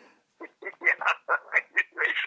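A man laughing in a run of short, rapid bursts, about five a second, starting about half a second in.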